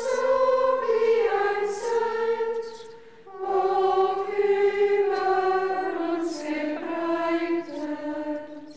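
A choir of women's voices, a congregation of nuns, singing a hymn in a large church. It comes in two held phrases with a short breath pause about three seconds in.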